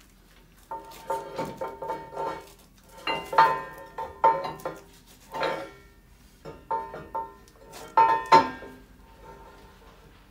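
Heavy steel clamp bars and brackets of a Bee Line axle-bending rig clanking and ringing against each other as they are handled and set in place under a truck axle. The clanks come in about six bursts, the loudest near the end.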